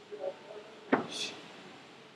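Kettlebell lift: a single short knock about a second in, followed at once by a brief sharp exhale as the bell is driven from the rack position overhead.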